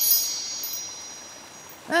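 Chime-like shimmer sound effect marking a wavy dream transition into a flashback: a quick run of high ringing tones that fades away slowly over about a second and a half. Right at the end a cartoon burp begins.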